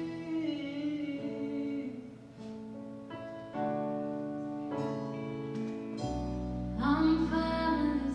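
A song with a singing voice over sustained instrumental chords. It dips quieter about two seconds in, then swells with deep bass about six seconds in.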